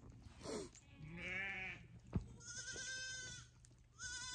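Goats bleating: a short bleat about a second in, then a longer, quavering bleat. A single sharp knock falls between them.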